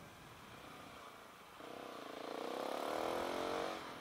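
Husqvarna 701's single-cylinder engine with a Remus aftermarket exhaust accelerating, heard muffled. Starting about one and a half seconds in, the engine note climbs in pitch and gets louder, then drops away just before the end.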